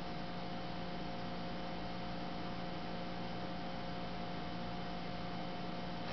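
Steady electrical hum over an even hiss, with a few faint steady higher tones and no other events: recording room tone.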